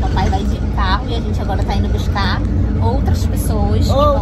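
Steady low rumble of a moving road vehicle's engine and tyres, heard from inside the cabin, under a person's voice.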